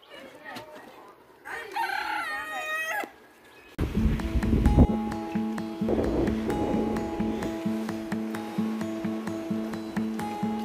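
A rooster crows once, for about a second and a half. About four seconds in, louder background music with a steady beat starts and runs on.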